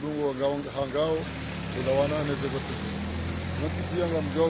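A motor vehicle's engine running nearby, a low steady hum that comes in about a second in and grows louder through the second half, under a man's speech.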